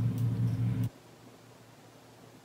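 A steady low hum that cuts off suddenly about a second in, leaving only faint hiss.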